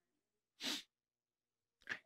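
Near quiet, broken once, about half a second in, by a single short, faint breath noise from the preacher.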